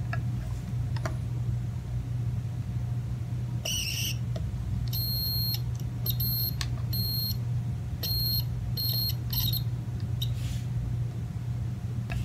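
A digital multimeter's continuity beeper gives about seven short, broken beeps between about four and nine and a half seconds in as the probes touch the aluminum foil shielding of a guitar's cavity. The on-and-off beeping is the sign of an intermittent connection, where the meter reads on some spots and not on others. A steady low hum runs underneath.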